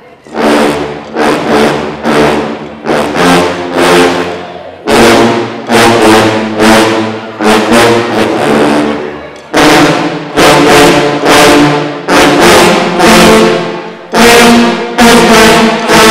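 A large sousaphone ensemble playing loud, short, punchy chords in a driving rhythm, starting just after the opening with brief breaks about five and nine and a half seconds in.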